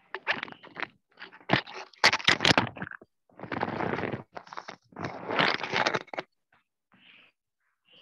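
Loud bursts of scraping and rustling with a few sharp clicks, close on a video-call participant's microphone, in several clusters that stop a little after six seconds.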